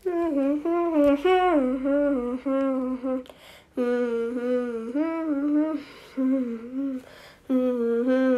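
A person humming a wandering tune in about four phrases, with short pauses between them.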